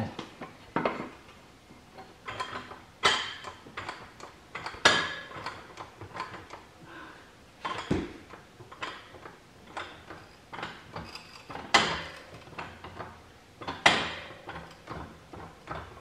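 Irregular metal clanks and knocks of steel floor jacks and tools being shifted on a concrete floor, some ringing briefly, with a duller thud about halfway through.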